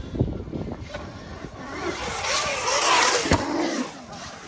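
Dirt bike motor rising and falling in pitch as the bike rides through a concrete skatepark bowl, growing louder as it comes closer, with a sharp thud a little after three seconds in.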